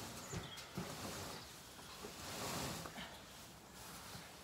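A straw bale being shifted by hand: two dull thuds near the start, then rustling straw about two and a half seconds in.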